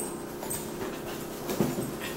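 Quiet handling of a red saucepan and its cardboard cookware box: light knocks and rustles, with a slightly louder sound about one and a half seconds in.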